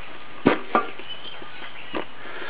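TSEC/KY-68 secure field phone handled as it is turned over and set down: a dull knock about half a second in, then a lighter knock just after.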